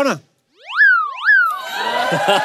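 A cartoonish comedy sound effect: two quick pitch slides, each rising steeply and falling back. About a second and a half in, the studio audience noise rises with applause and laughter.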